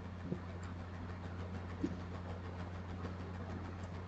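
Steady low electrical hum with a faint hiss, with two faint ticks, one about a third of a second in and one a little under two seconds in.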